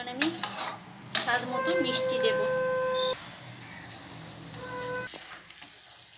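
A metal spatula scraping and stirring a thick bottle gourd curry in a wok, with the food sizzling lightly and a few sharp scrapes in the first second. A steady pitched tone of unclear source is held for about two seconds and is the loudest sound, then returns briefly near the end.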